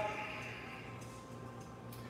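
Quiet room tone with a faint low steady hum, after the fading tail of a spoken word at the very start.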